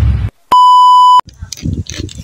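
A single loud, steady electronic beep lasting under a second, cut off sharply, laid in at the cut between the intro and the vlog. Just before it, a low rumbling intro sound effect ends abruptly.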